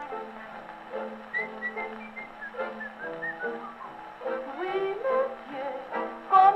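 Orchestral passage without vocals from a 1938 78 rpm shellac record played on a Victrola gramophone: a high line of short, quick notes over held accompaniment chords.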